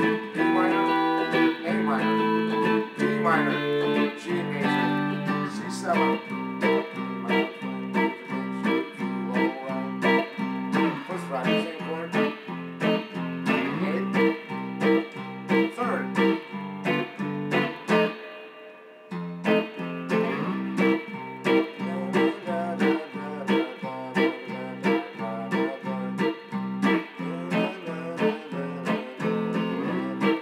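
Electric guitar strumming chords: held chords over the first few seconds, then short, choppy strokes about two a second in a steady rhythm, with a brief break a little past halfway.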